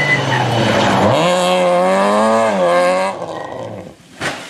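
Citroën Saxo rally car engine revving hard, its pitch climbing sharply about a second in and holding high, then cutting off abruptly about three seconds in.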